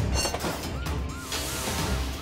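Animated cartoon soundtrack: music over a steady bass, with a short warbling tone repeated about four times and a rushing hiss building in the second half.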